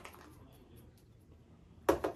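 Faint handling sounds, then a teaspoon clinks sharply once against the pot and its saucer near the end.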